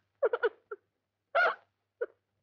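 A woman sobbing in short, broken bursts of voice, with one cluster of catches in the first second and another longer sob about halfway through.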